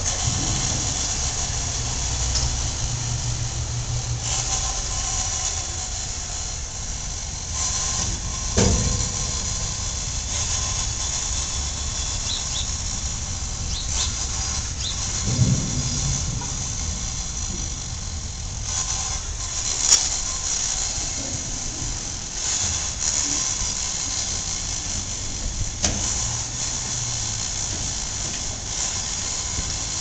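Street traffic: vehicle engines running with a low rumble, over a steady high-pitched hiss, with a few brief knocks.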